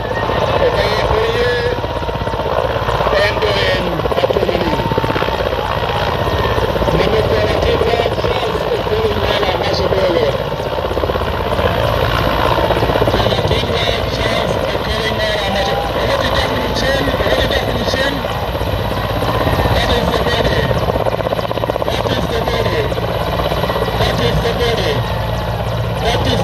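Military helicopter descending and landing, its rotor beating steadily throughout, with people's voices over it.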